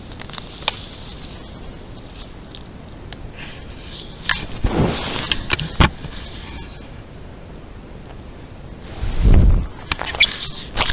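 Bull elk at a trail camera, nosing and rubbing against it: scraping and knocking on the camera housing, a cluster of sharp knocks about halfway through and a heavier thump near the end.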